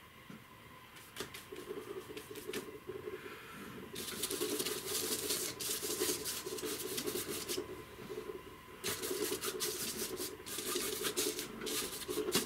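Stiff bristle brush scrubbing oil paint onto paper in quick back-and-forth strokes, a dry scratchy rubbing. A few light scratches come first, then two longer spells of brisk scrubbing, the first starting about four seconds in.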